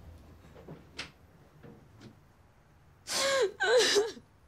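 A young woman bursts into loud crying near the end: two wailing sobs in quick succession.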